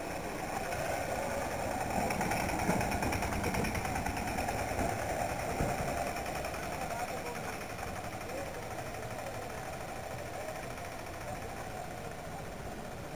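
Vehicle engine and road noise heard from on board while driving, a steady rumble with a rattle, slightly louder in the first half.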